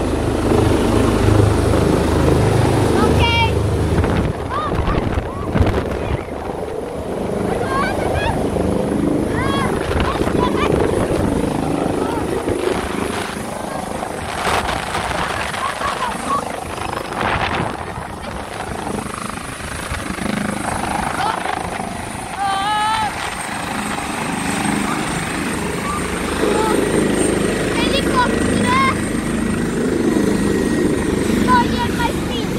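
Airbus H145 air-ambulance helicopter landing, its rotor beat and twin turbine engines loud, the rotor beat heaviest in the first few seconds while it is still in the air. A steady high turbine whine runs on after touchdown and drops slightly in pitch about two-thirds of the way through.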